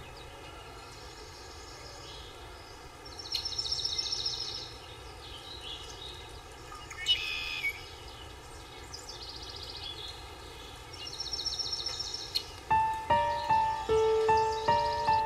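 Outdoor ambience: a steady hiss with birds calling, a rapid high trill twice and a shorter chirping call between them. Soft music with distinct struck notes comes in about a second before the end.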